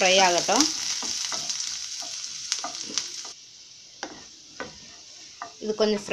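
Cumin seeds, ginger and garlic sizzling in hot oil in a non-stick pan, stirred with a wooden spatula that clicks and scrapes against the pan. The sizzle drops away suddenly about three seconds in, leaving a few scattered clicks.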